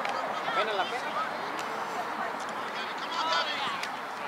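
Faint, scattered shouts and calls of spectators and players across an open soccer field, over steady outdoor background noise.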